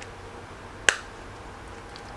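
A single sharp click about a second in: the metal press-stud snap on a nylon multi-tool sheath being pressed shut.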